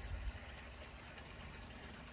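Faint background noise: a low rumble with light hiss, and a soft low thump just after the start.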